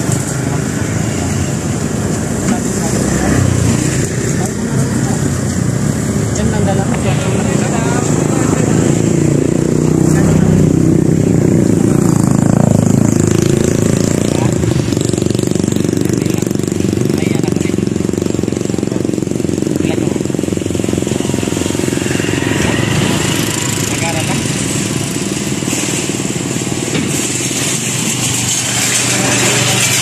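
Two men in conversation, talking back and forth over a steady background noise.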